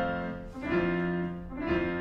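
Two piano chords, struck about half a second and a second and a half in, each ringing on. The tail of a sung note fades at the start.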